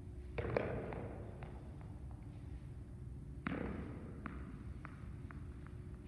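A tossed tennis ball landing on a gym floor and bouncing, the bounces coming quicker as it settles; a second toss lands about three and a half seconds in and bounces the same way, echoing in the large gym.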